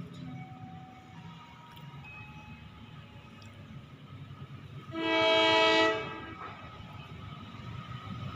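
Horn of an approaching box-nose diesel locomotive: one blast lasting about a second, about five seconds in, over a low background.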